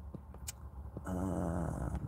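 A man's low, closed-mouth "hmm" hum, starting about a second in and lasting just under a second, with a faint click before it.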